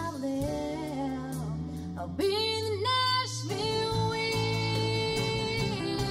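Live country band with a female lead vocalist singing over strummed acoustic guitar, electric guitars and drums. A sung phrase rises about two seconds in, then she holds one long note until near the end.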